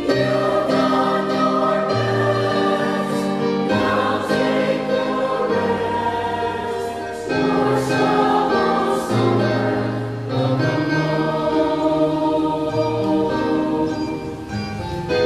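Mixed choir of women, men and boys singing a sacred song in parts, holding each chord for a second or two before moving to the next.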